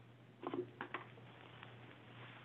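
A few faint clicks and knocks about half a second in, over a steady low hum.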